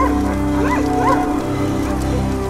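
Film soundtrack: a steady low music drone with three short, high calls that each rise and fall in pitch.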